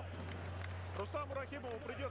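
Faint voice talking, with a steady low hum underneath.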